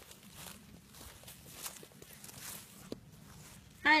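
Faint, irregular footsteps through grass, a soft rustle of steps with one small click near the end.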